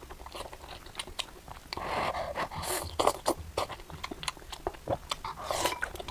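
Close-up eating sounds: biting and chewing a meat-stuffed green pepper, wet crunching with many small clicks. Two longer rushes of noise come through, the first about two seconds in and the second near the end.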